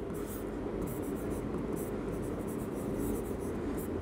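A pen writing by hand on a board: a run of short, faint scratching strokes with small gaps between them, over a low steady room hum.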